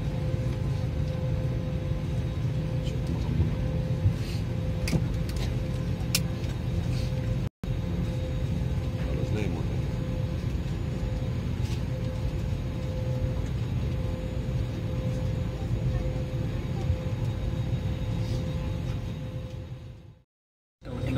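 Steady low rumble and hum of an airliner cabin parked on the ground, with a few faint clicks. The sound breaks off briefly about a third of the way in.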